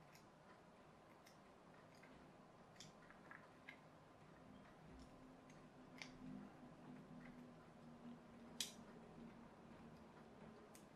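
Near silence broken by sparse faint clicks of a craft knife cutting small plastic kit parts from the moulded sprue and trimming off the flashing, with the sharpest click about eight and a half seconds in, over a faint low hum.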